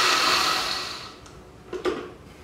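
Countertop blender running on ice and milk, then switched off and winding down over about a second. A short knock near the end as the blender jar is lifted off its base.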